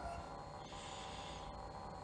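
Pause between spoken sentences: faint steady room noise, with a soft intake of breath by the speaker through the middle.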